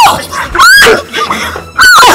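A woman's loud, high-pitched screams in the middle of a physical fight: three short shrieks, each rising and falling in pitch, over background music.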